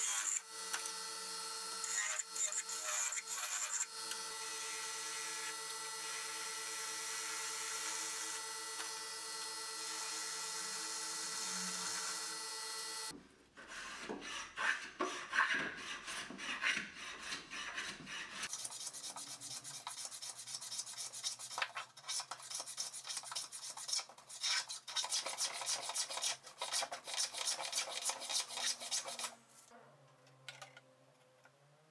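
A wood lathe runs steadily with a turning tool cutting the spinning wooden blank. About thirteen seconds in it breaks off into the irregular scraping of a small hand saw cutting a wooden dowel. After that come regular back-and-forth hand-tool strokes on wood, about two a second.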